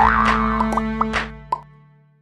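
Short playful logo jingle with cartoon sound effects: rising sliding tones and a few quick pops, fading out over the second half with a last pop about one and a half seconds in.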